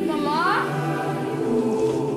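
Choral music in the soundtrack: a choir holding long chords, with a brief upward-gliding voice about half a second in.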